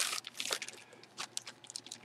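Plastic bag crinkling and rustling in irregular crackles as gloved hands handle it and reach inside to pull out a folded jersey.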